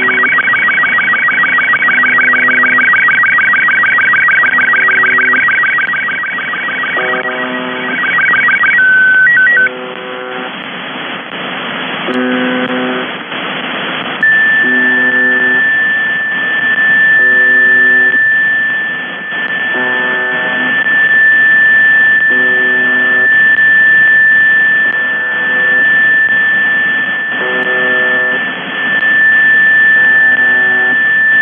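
UVB-76 'The Buzzer' shortwave signal heard through a receiver: its coarse buzz sounds for about a second every two seconds or so, over radio hiss. An SSTV transmission's fast warbling tones run for the first nine seconds and end with a few short beeps. From about fourteen seconds a single steady high tone holds alongside the buzzes.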